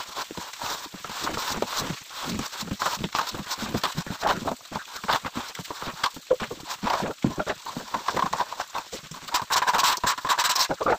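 Scraping of a long straightedge drawn over wet cement plaster, with irregular knocks and clatters of the tool and of footsteps on the scaffold boards; the scraping grows loudest near the end.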